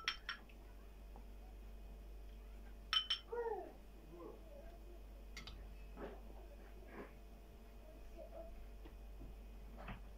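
Metal spoon clinking now and then against a white enamel pot and a small ceramic bowl as thick pea soup is ladled out, a few light clinks in all. A little past three seconds in, a short high cry that falls in pitch.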